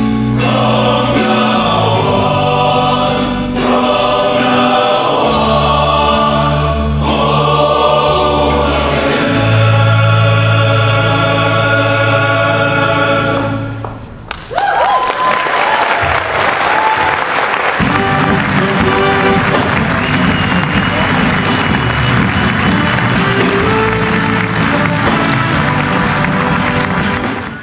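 Male choir singing, ending on a long held chord that cuts off about fourteen seconds in. The audience then applauds, with a few whoops.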